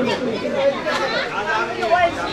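Background chatter: several people talking at once.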